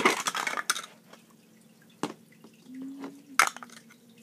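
Hard plastic toy building blocks and figures being handled and knocked against a plastic tray: a quick clatter of clicks at first, then a few single taps.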